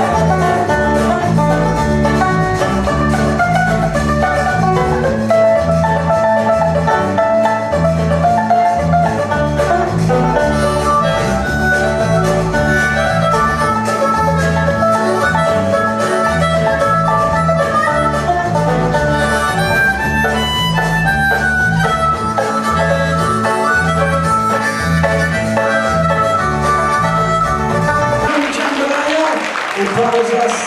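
Live Cajun-style band playing an instrumental passage, with banjo, guitar, bass and drums, a rubboard scraping the rhythm and a harmonica taking the lead.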